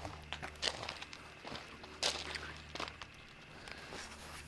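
Footsteps crunching on loose, rounded pea gravel, several uneven steps.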